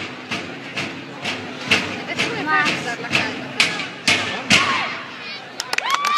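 Parade drums of a musici corps struck in a steady beat, about two strokes a second, with spectators talking close by.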